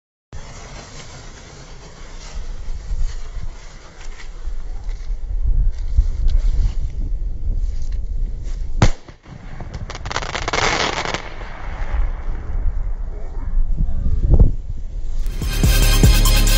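Aerial firework being set off: a lit fuse, then a single sharp bang about nine seconds in, followed a second or two later by a louder, rushing stretch of noise.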